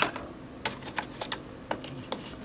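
Light, irregular clicks and taps of small metal eyeshadow pans being set into the plastic wells of a makeup palette, about six in two seconds.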